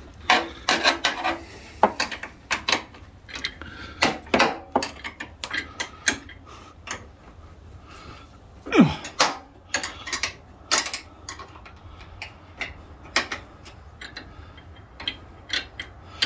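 Irregular metallic clinks and clicks of a wrench working on bolts and of steel pins and chain on a Ruegg three-point hitch during assembly. About nine seconds in, the loudest sound is a short squeak that falls in pitch.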